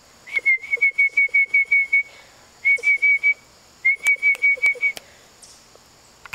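A person whistling to a puppy in three quick runs of short, same-pitched notes, about five a second, with short pauses between the runs. It is a call meant to make the dog stop chewing and look up.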